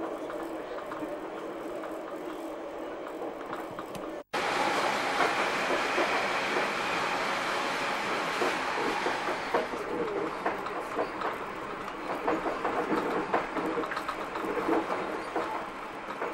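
Passenger train running, heard from inside the carriage: a steady rumble with a hum at first, then, after a break about four seconds in, louder rattling and wheel clatter.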